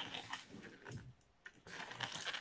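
Inflated latex modelling balloon rubbing and squeaking faintly under the hands as it is twisted into a small bubble, with a short pause about a second in.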